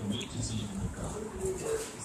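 A dog making short vocal sounds while play-wrestling with a person, mixed with rustling and scuffling on the floor.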